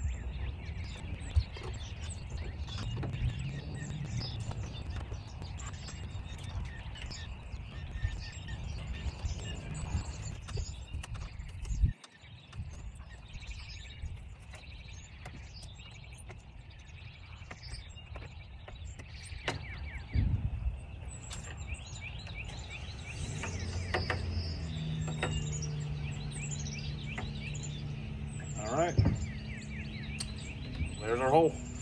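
Scattered clicks and knocks of a butter knife prying a Lippert screwless window frame loose in a camper door, over a steady low outdoor rumble. Birds chirp in the second half.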